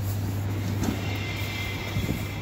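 A motor vehicle engine running with a steady low hum. A faint high whine joins in about halfway through.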